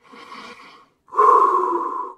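A man taking slow, deep breaths: a faint breath, then a long steady breath from about a second in.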